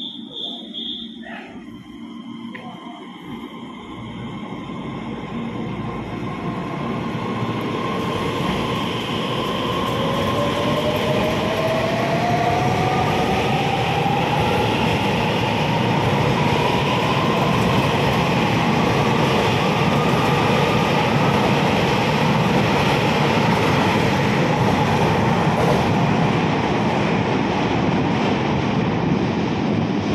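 TRA EMU3000 electric express train pulling out of an underground station past the platform. The rumble builds over about the first ten seconds, and a whine rises in pitch as the train gathers speed, then gives way to a loud steady run of the cars going by.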